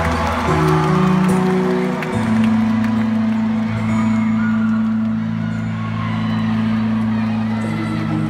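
A live band holding sustained chords, which change about half a second and two seconds in, as a song closes, while the audience cheers and shouts; the cheering fades after about two seconds.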